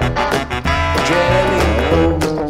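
Upbeat instrumental music with a steady beat, bass line and melody: the backing track of a children's song playing on without singing.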